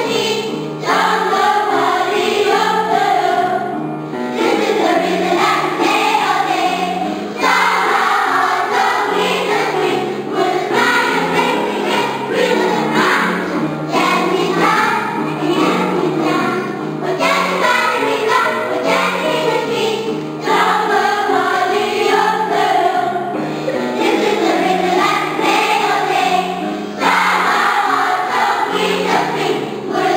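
A children's choir of young schoolchildren singing together, in phrases of a few seconds each with short breaths between them.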